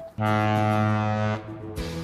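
A freighter's ship horn sounding one long, low, steady blast that cuts off about a second and a half in.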